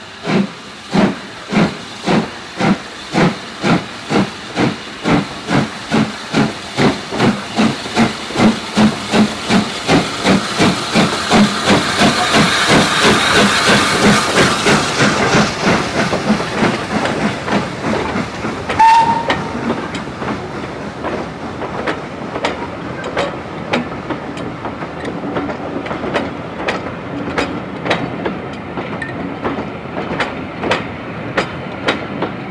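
LSWR S15 4-6-0 No. 506 pulling away with a train, its exhaust beating steadily at about two a second and quickening slightly, with a swelling hiss of steam as the engine passes close. A brief high tone sounds about two-thirds through, then the coaches roll by with a rhythmic clicking of wheels over the rail joints.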